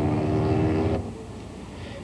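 A lorry's engine running at a steady pitch, cut off abruptly about a second in and followed by a faint, quieter background hiss.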